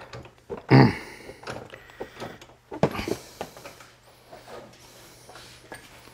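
A few short handling noises in a small workshop: a louder short sound about a second in, a sharp knock near three seconds, and faint rustling between, as tools are picked up and moved.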